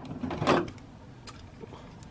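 Faint small plastic clicks and rubbing from a Robot Spirits Earlcumber action figure as its limbs and sword are handled and posed, with a short soft rush about half a second in.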